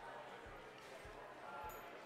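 Faint voices of people talking over a low, steady thump about twice a second.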